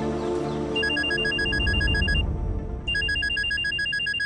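A phone ringing with an electronic trilling ring, two rings of about a second and a half each with a short pause between. Background music fades out during the first second.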